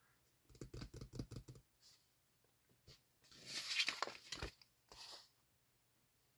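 Glossy sticker sheets being handled: a quick run of light taps as the sheets are leafed through, then a louder paper rustle as one sheet is slid out and lifted, and a short rustle just after.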